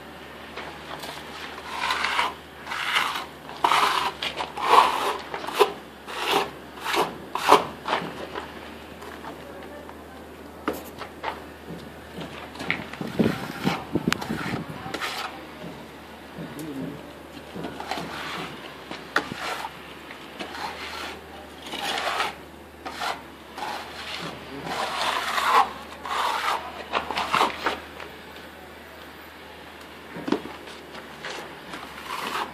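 Hand trowel rubbing and scraping wet cement render across a concrete block wall, in quick repeated strokes. Two runs of strokes, one in the first quarter and one in the second half, with a quieter stretch between them.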